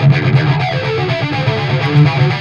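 Distorted Gibson Les Paul electric guitar in drop-D tuning, played through a Randall amp, playing a lead riff with a thin, bright tone. It is a run of sustained single notes that starts right at the beginning.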